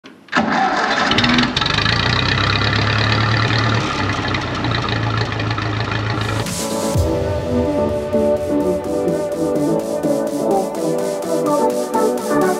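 A grey Ferguson tractor's engine comes in abruptly and runs steadily with a low hum for about six seconds. It gives way to an intro music track with a steady beat.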